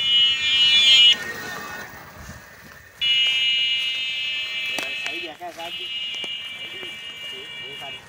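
A high-pitched steady buzz that cuts off about a second in, comes back near the three-second mark and runs on with a short break, with a few brief voices and two sharp clicks in between.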